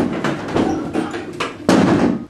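A noisy commotion of several people whooping and scrambling about a small room, with a sudden loud thump near the end.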